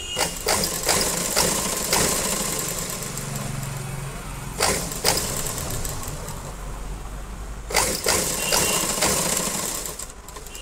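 Sewing machine running steadily as fabric is fed through it, with sharp clicks and knocks near the start, about five seconds in, and again near eight seconds.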